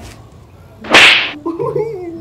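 A single sharp smack on the hard shell of a full-face helmet about a second in, followed by a voice.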